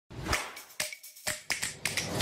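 Sharp snap-like clicks, five or six in two seconds, each with a short ringing tail, opening a music intro.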